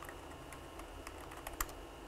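Faint keystrokes on a computer keyboard as a sentence is typed: a few irregular, scattered clicks.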